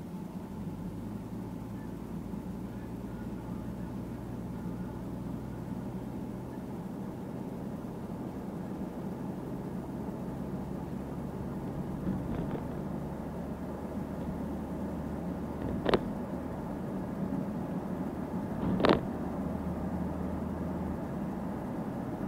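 Car engine and road noise heard from inside the cabin while driving, a steady low hum. Two short knocks come about two-thirds of the way in and near the end.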